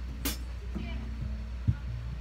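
Live band's amplifiers and PA humming between songs, with a short hiss just after the start and one soft low thump near the end.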